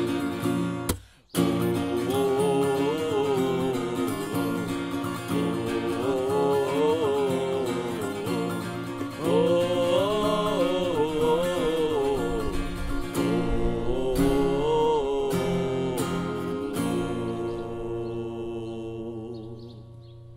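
Acoustic guitar strummed under men singing a wordless melody, the close of a folk-style song. There is a brief dropout about a second in, and near the end the singing stops and the last guitar chord rings out and fades.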